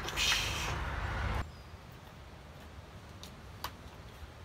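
Handling noise as an electric-scooter charger and its cable are picked up and the plug is connected: a short scraping rustle, a low rumble that cuts off suddenly about a second and a half in, then a couple of faint clicks.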